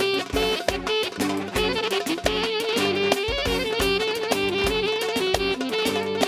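Instrumental band music with a steady beat and held melody notes, without singing.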